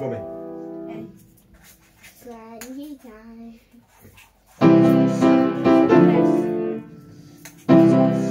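Upright piano: a held chord dies away in the first second, then after a short wavering hummed line from a voice, block chords are struck several times, a brief pause, and the chords start again near the end.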